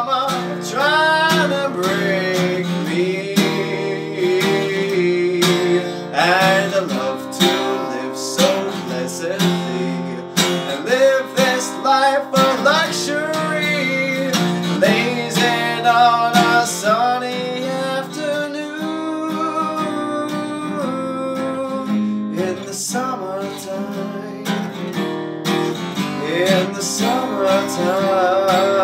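A man singing to his own strummed acoustic guitar.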